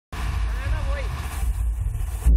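Steady low rumble of a bus engine with a voice over it; the sound cuts out for an instant at the very start.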